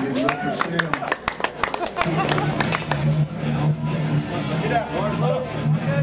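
Audience clapping and cheering for about two seconds, then background music with guitar comes in and carries on under crowd voices.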